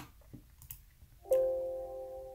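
A few faint clicks from editing the file name, then about a second in a single electronic computer alert chime sounds and fades away as a confirmation dialog pops up.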